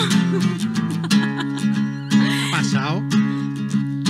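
Acoustic guitar strummed in sustained chords. About two seconds in, a wail glides down and back up over it, which is heard as a siren.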